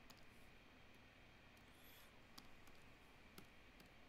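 Near silence: faint room tone with several soft, scattered clicks from a computer mouse being used to draw.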